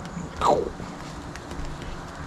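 Marine vinyl being stretched and pulled over the corner of a plywood panel by hand: one short squeak that falls steeply in pitch about half a second in, with faint rustles and ticks of the material being handled.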